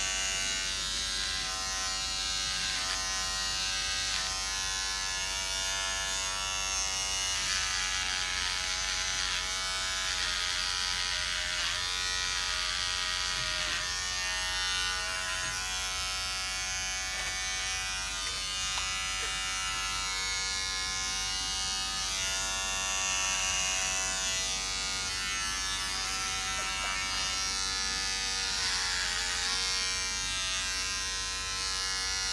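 Battery beard trimmer buzzing steadily as it cuts through hair on the head, its pitch dipping slightly now and then.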